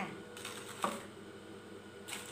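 Aluminium foil wrapper crinkling and rustling as it is handled, with a few light clicks and one sharp tap just under a second in.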